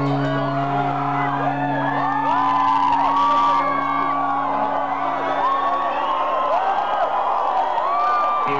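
Live rock band holding a steady low note as the audience whoops and cheers over it.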